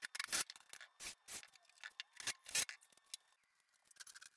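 An irregular run of short scrapes and rubs, about a dozen in four seconds, high and thin with no low end.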